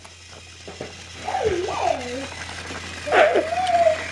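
A child's voice making wordless, sliding vocal sounds twice, once starting about a second in and again near the end, with a few faint clicks in the first second.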